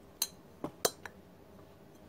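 Metal oil filter canisters clinking and clicking against each other as one is set down beside the others: four quick sharp clicks within about a second, the third the loudest.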